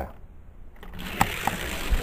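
Hot Wheels die-cast car (a Porsche Panamera) rolling down an orange plastic track: a couple of light clicks about a second in, then a steady rolling rattle of the small wheels on the track.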